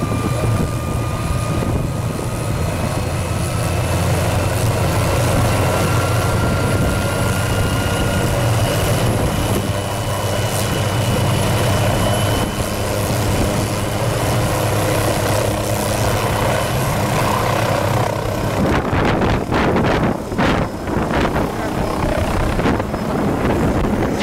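Small turbine helicopter running on the ground: a steady rotor beat under a high turbine whine that slowly rises in pitch. Near the end the steady beat breaks into rough, gusty buffeting.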